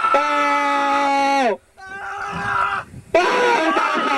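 A man's excited, drawn-out shout, held at one pitch for about a second and a half, then, after a quieter gap, another loud shout starting about three seconds in, falling in pitch.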